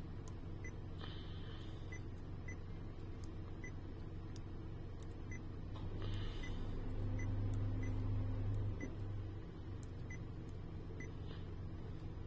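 Two short electronic beeps from a car navigation head unit's touchscreen as menu buttons are pressed, about a second in and about six seconds in. Underneath is a steady low hum that swells louder for a few seconds in the middle.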